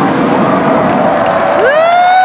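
Large arena crowd cheering and screaming just after the music stops, with one high voice close by rising into a long held 'woooo' near the end.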